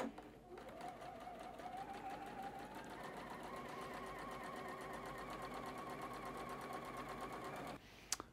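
A Juki sewing machine stitching a seam, faint, starting about half a second in. Its motor whine climbs in pitch as it speeds up over the first few seconds, then runs steadily until it stops just before the end.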